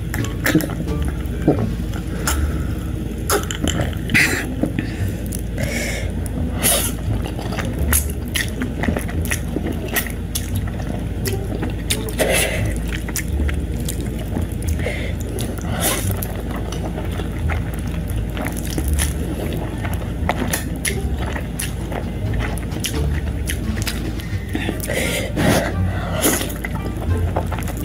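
Close-miked eating sounds: a person swallowing a drink from a glass, then chewing with frequent wet mouth clicks and smacks, and slurping noodles near the end. A steady low hum runs underneath.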